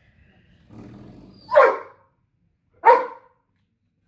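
Doberman barking twice, about a second and a half apart; a low growl leads into the first bark.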